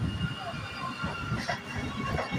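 Vande Bharat Express electric train set passing at close range: steady wheel-on-rail rolling noise with repeated low pulses and faint high steady tones.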